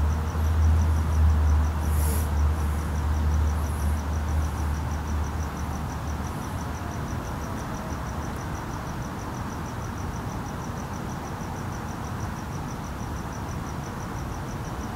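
Crickets chirping steadily at about four chirps a second over a steady background hum. A low rumble is heard for about the first six seconds and then stops.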